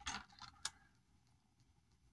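Faint handling of a ruler and pen on paper: a soft scrape, then one sharp click about half a second in, then near silence.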